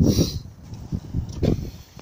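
Wind buffeting the microphone in uneven gusts, a low rumble that swells and drops several times.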